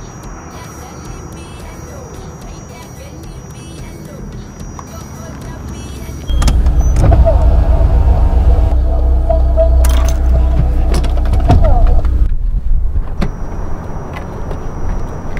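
Car engine running close by as a sedan drives up onto the tarmac. It comes in suddenly about six seconds in, runs loud and deep for about six seconds, then drops away.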